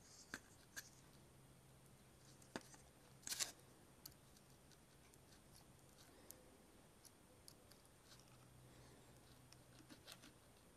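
Near silence: faint room tone with a few small clicks and a brief scrape about three seconds in, from hand tools being handled while a metal tab is soldered onto 18650 cells. Diagonal cutters press the tab down under the soldering iron.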